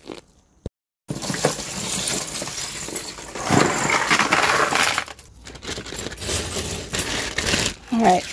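Metal costume jewelry (bracelets and earrings) jangling and clinking as gloved hands lift a bundle from a box and spread a pile out on a table. It starts about a second in and keeps up as a dense run of small metallic clicks, with a brief lull a little past halfway.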